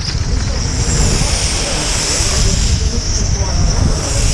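Small glow-fuel engines of 1/8-scale nitro RC on-road racing cars, buzzing at high revs as they lap the track. The high whine swells about a second in as they pass nearer and eases near the end.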